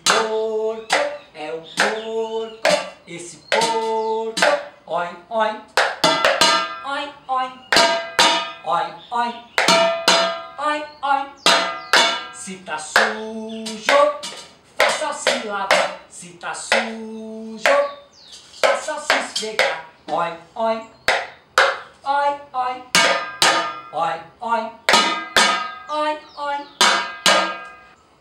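Kitchen utensils used as improvised drums: a metal pot, a baking pan and a plastic bowl struck with a wooden spoon and sticks. They keep a steady beat of a few strokes a second under a sung children's song.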